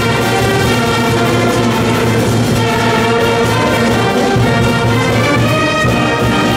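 Festive brass-band music with a steady pulsing bass, played as a celebration anthem.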